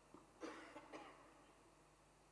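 A person coughing faintly, two short coughs about half a second apart, against near silence.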